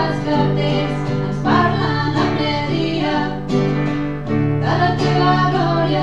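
A woman singing a song live, accompanied by acoustic guitar and keyboard.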